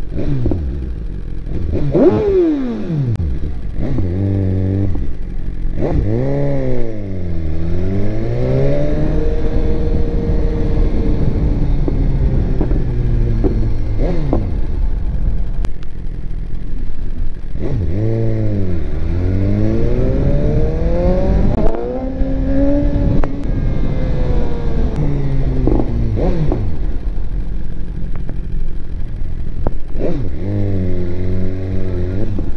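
2018 BMW S1000RR's inline-four engine revving up and down in stop-and-go riding. Several runs of revs rise and fall, and it settles back to a low idle between them.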